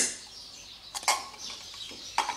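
Metal spoon clinking against the ceramic crock of a slow cooker while tomato paste is spooned in: one sharp click at the start and a couple of lighter clicks about a second in.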